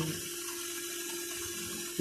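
Water rushing steadily through temporary chilled-water flushing pipework and its filter housing, with a steady low hum underneath.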